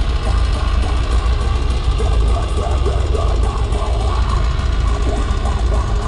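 Heavy metal band playing live, guitars over a heavy, steady low end, heard loud from within the crowd on a camera's microphone in poor quality.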